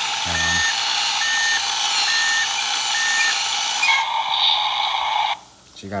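Toy bulldozer's small electronic speaker playing a tinny, hissy engine sound effect with a short beep about once a second, like a backing-up alarm. The sound changes about four seconds in and cuts off suddenly just after five seconds, while the toy's tracks are being driven by its motor.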